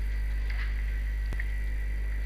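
Steady low electrical hum with a faint high whine over it, and a single sharp click a little past halfway.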